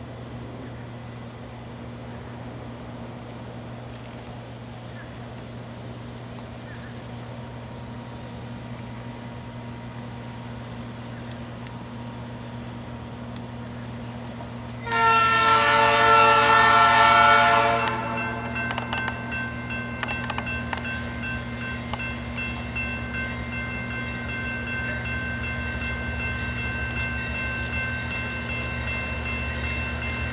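GE Dash 9-40CW diesel locomotives approaching with a steady low engine rumble that grows louder toward the end. About halfway through, the lead unit's air horn sounds one loud blast of about two and a half seconds, after which fainter steady high tones carry on over the rumble.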